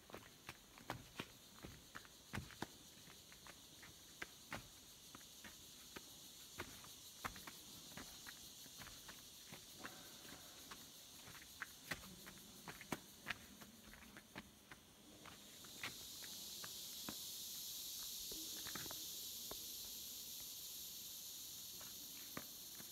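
Faint footsteps crunching on a gritty sand-and-pebble dirt trail at a walking pace, about two steps a second. About fifteen seconds in, a high steady insect buzz rises and holds.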